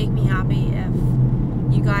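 Steady low drone of a moving car's engine and road noise, heard from inside the cabin.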